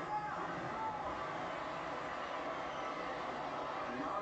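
Faint background voices over a steady noise, with no distinct crackle of the fire to be heard.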